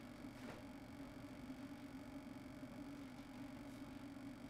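Quiet lecture-hall room tone: a faint steady low hum, with a faint tick about half a second in.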